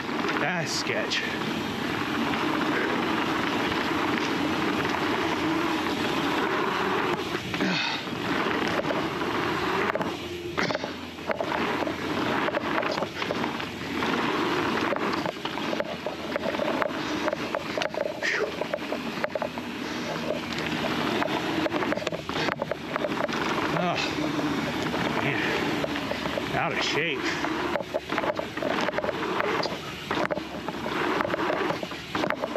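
Full-suspension mountain bike riding down a dirt singletrack: a steady rush of tyre and wind noise, broken by frequent short knocks and rattles from the bike over bumps.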